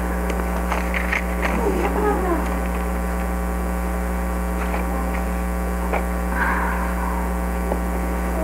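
Steady electrical mains hum on the recording, with a few faint clicks and a brief rustle as Bible pages are handled.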